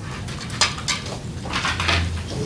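Classroom background noise: a few short knocks and rustles, bunched together near the end, over a low steady hum.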